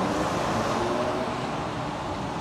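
Inside the cab of an Iveco heavy goods truck on the move through a road tunnel: a steady engine drone under road and tyre noise.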